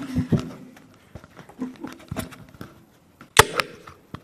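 Scattered knocks and clicks of handling noise, with one sharp knock about three and a half seconds in, over faint indistinct murmuring.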